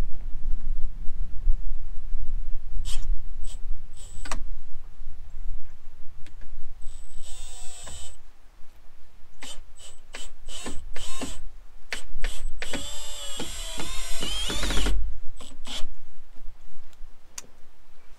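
Cordless drill/driver driving wood screws into cedar fence boards: a short run of the motor about halfway through and a longer run of about two and a half seconds later on, with scattered clicks between.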